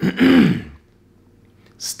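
A man clearing his throat once, a single rasping half-second burst right at the start.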